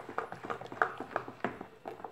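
Plastic utensil stirring soapy liquid in a plastic basin, knocking and scraping against its sides: irregular clicks and taps, several a second.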